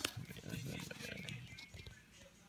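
Handling noise from a nylon vest and its sewn-in label being fingered close to the microphone: a sharp click at the start, then low, uneven rustling with small ticks that dies down near the end.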